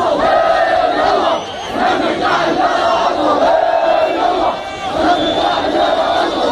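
A large crowd of demonstrators shouting slogans together in unison, in phrases broken by short pauses.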